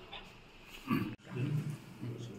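A man's voice making short, low, wordless sounds in a pause between speakers, broken by a single sharp click just past the middle.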